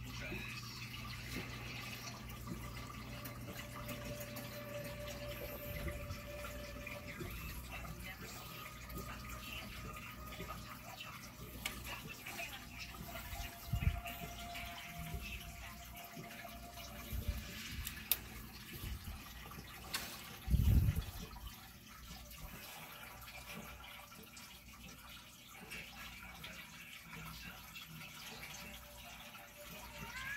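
Home aquarium's air stone bubbling, a steady wash of bubbling, trickling water. A few dull low thumps come in the middle, the loudest about two-thirds of the way through.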